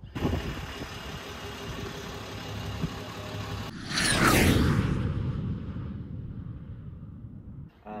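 Channel intro sound effect: a steady low rumble, then a sudden loud whoosh about four seconds in that sweeps down in pitch and fades away.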